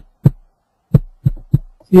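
About five short, dull knocks, one early and four in quick succession about a second in, picked up by the microphone while a computer mouse is being worked.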